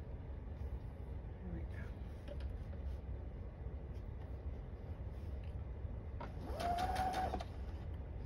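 Electric sewing machine stitching a seam through layered quilting cotton, with a steady low hum. About six seconds in it runs faster for just over a second, its motor whine rising, holding and dropping back.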